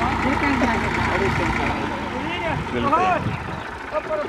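Diesel farm tractor engine running as the tractor pulls away, its low rumble growing fainter about halfway through, with people's voices calling out over it.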